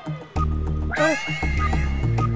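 Comic film background music: a heavy, pulsing bass line comes in under a sustained tune, with a brief high rising cry about a second in.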